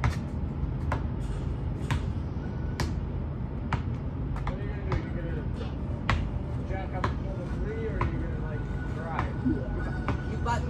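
Basketball being dribbled on pavement, sharp bounces coming about once a second.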